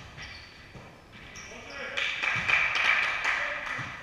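Volleyball being struck during a rally in a large gym hall that echoes: a sharp hit at the start and a few more knocks later, with players' voices swelling loudly in the second half.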